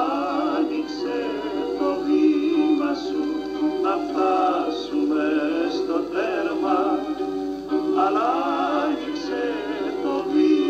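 A Greek popular song: male voices singing phrases with vibrato over a steady instrumental accompaniment.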